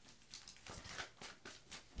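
A deck of tarot cards being shuffled by hand: faint, irregular soft card flicks and slides, several a second.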